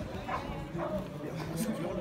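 Indistinct distant shouts and chatter from players and spectators, with wind rumbling on the microphone.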